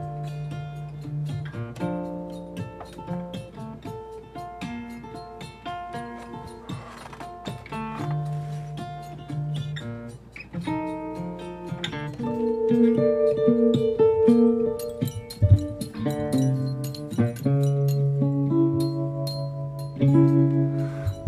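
Acoustic guitar played with the fingers: a continuous run of plucked notes and chords, growing louder about halfway through.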